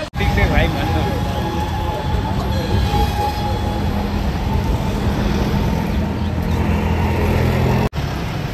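City street traffic: engines of cars and auto-rickshaws running in a steady low rumble with a hum, and a faint steady higher tone through the first few seconds.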